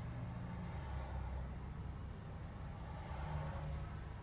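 Low, steady rumble of road traffic and engine noise heard from inside a car's cabin.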